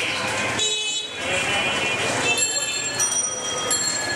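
Vehicle horns honking over street traffic noise and voices: a short honk about half a second in, then a longer honk of over a second from about two and a half seconds in.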